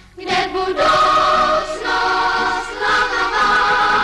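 A children's choir of girls singing together. The choir comes in just after the start and holds long notes, stepping to a new pitch about once a second.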